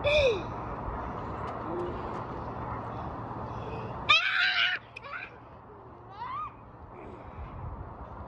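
Children's high-pitched squeals and calls over steady outdoor background noise, the loudest a short shriek about four seconds in, followed by a couple of rising whoops.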